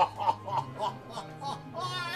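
Background music with a steady low note, under faint snatches of voices.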